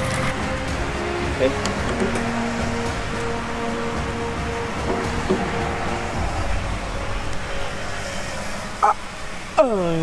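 Steady rush of water flowing out of the open end of a large PVC pipe, with background music over it.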